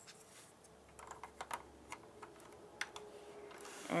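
A scatter of faint, irregular clicks of LEGO plastic pieces as the wall panel of the model's prison section is pushed out.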